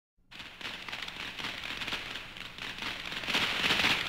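Dense crackling: many rapid small pops over a hiss, starting just after the first moment and growing louder toward the end.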